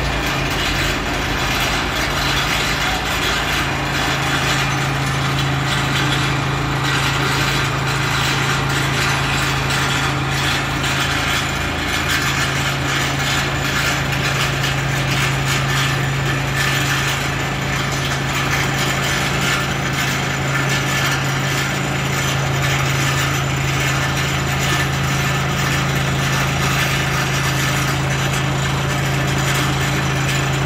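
Piling rig driving a steel pile liner, running steadily with a constant low hum and a continuous fine mechanical rattle.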